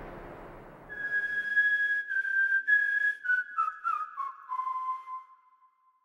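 Ending of a film-score cue: a low swell fades away, then a lone whistled melody of a few held notes steps down in pitch and dies out just before the end.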